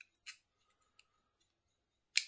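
Faint click of a metal emergency key blade going into a Mercedes smart key fob, about a quarter second in, with a tiny tick near the one-second mark; otherwise near silence.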